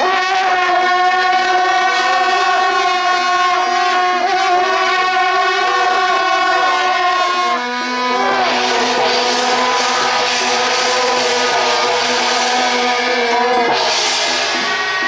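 Brass band of trumpets and trombones playing long sustained chords, changing chord about eight seconds in. From that point a loud, bright hissing wash joins the held notes.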